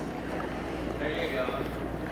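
Muffled voices heard through a phone in a pocket, over a low, steady rumble of noise.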